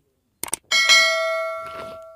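Subscribe-button animation sound effect: a quick double mouse click, then a bell chime that rings out and fades away over about a second and a half.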